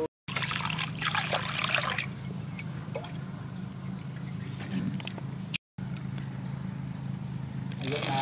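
Water pouring or trickling, loudest in the first two seconds, over a steady low hum. The sound drops out completely twice, very briefly.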